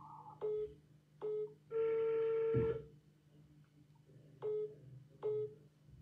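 Telephone call-progress tones from a mobile phone on speaker as an outgoing call is being put through: two short beeps, a longer beep of about a second, then two more short beeps, all at the same low pitch.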